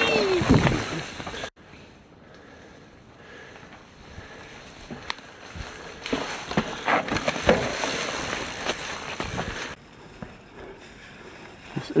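Mountain bike on a rough forest singletrack: tyres on dirt, frame and drivetrain rattling, and scattered knocks as it rolls over roots and logs, busiest a little past the middle. A short wavering tone comes in the first second, and the sound changes abruptly twice.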